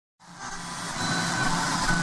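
Intro sound effect: a dense, rushing noise swell fades in from silence and grows steadily louder, with a faint held tone running through it.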